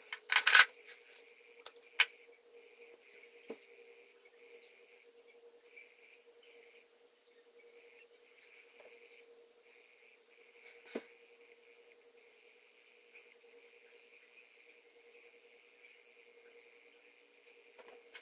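Sharp clicks and taps of small makeup items being handled, several in the first two seconds and a few single ones later, the last about eleven seconds in, over a faint steady high whine.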